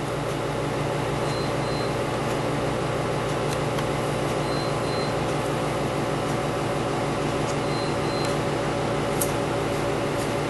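Small electric motor running with a steady, even hum, with a faint click near the end.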